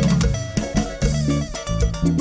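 Live band playing an instrumental passage: a guitar melody over bass guitar and drums, with a steady beat.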